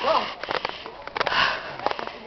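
Heavy, out-of-breath breathing of someone climbing steep stone steps, with a loud breath about one and a half seconds in. Light footsteps tap on the stone between breaths.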